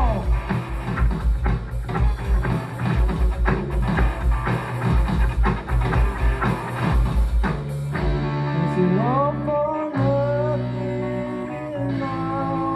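Live rock band playing: electric guitars and bass over a driving drum-kit beat. About eight seconds in the drums drop out and the guitars ring on with held notes and notes sliding upward.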